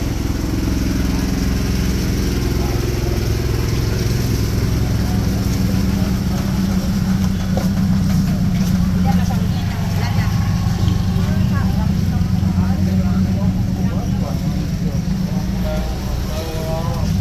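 A motor vehicle engine running steadily close by, its low hum growing stronger about six seconds in, with the chatter of people's voices around it.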